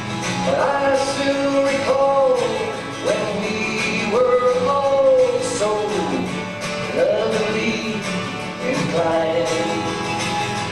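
A man singing a folk song, holding long notes that slide between pitches, while strumming a twelve-string acoustic guitar.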